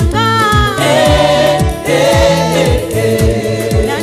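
Swahili gospel music: a choir singing over a deep, regular drum beat and bass.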